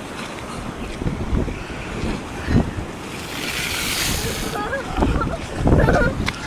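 Rough sea surf rushing and breaking against the sea wall, with a louder hissing wash a little past halfway. Wind buffets the microphone in low rumbling gusts near the end.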